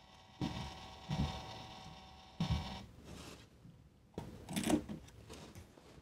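Phomemo D30 thermal label printer feeding and printing a label: a quiet, steady motor whine lasting about two seconds. It is followed a little later by a few brief handling sounds as the printed label is taken out.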